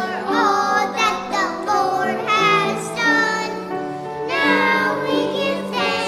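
A small group of children singing a song together, holding each note in a steady melody.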